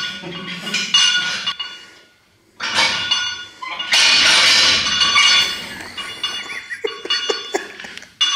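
Weight plates being moved on and off a barbell and plate rack, clanking metal on metal with ringing after each knock. There is a clank about a second in, another at two and a half seconds, and a longer ringing clatter at four to five seconds, then a few light clicks near the end.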